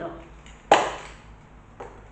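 A single sharp plastic knock, then a faint click about a second later, as the cap of an aerosol spray paint can is handled against the table.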